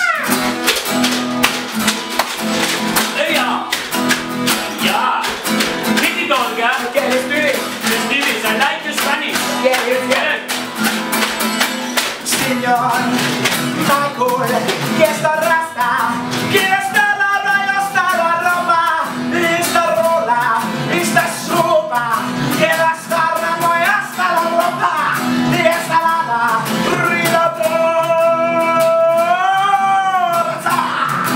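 Live acoustic guitar strummed in a steady rhythm under a man singing a Spanish-flavoured song, with long held notes near the end.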